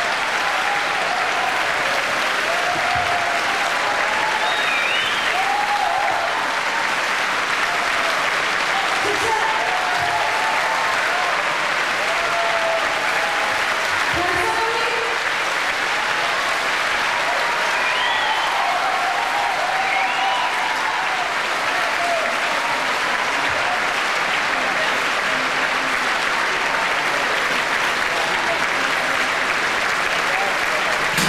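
A large concert audience applauding steadily, with scattered shouts and cheers rising above the clapping.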